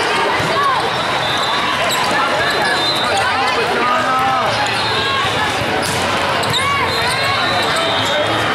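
Sneakers squeaking on a hardwood court during a volleyball rally, with a few sharp hits of the ball, over a steady din of voices in a large hall.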